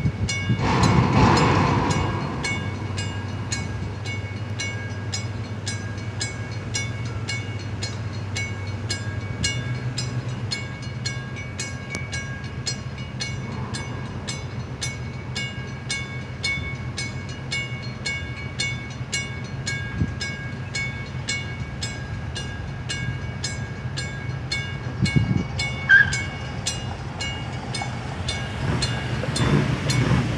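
Drawbridge traffic-gate warning bell ringing steadily, about two strokes a second, over wind noise and a low steady hum. A vehicle approaches near the end as the gates lift.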